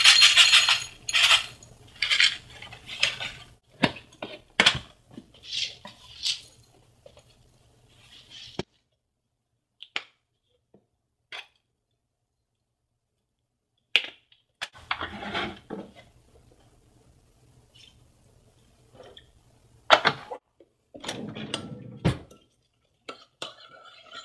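Handling noises of food preparation: a paper packet of dry onion soup mix rustling as it is shaken out over a plastic bowl, then scattered clinks and scrapes of a spoon and containers against the bowl. There are several seconds of near silence in the middle.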